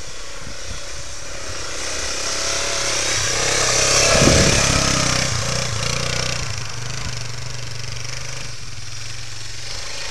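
1986 Honda Big Red 250 three-wheeler's single-cylinder four-stroke engine running as it is ridden through snow. It gets louder as it passes close by about four seconds in, then fades back to a steady hum.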